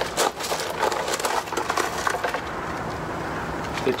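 Crackling, clicking handling noise from hands working with a small plastic dongle and its wires at the battery bank. The clicks come thickest in the first couple of seconds, over a faint steady low hum.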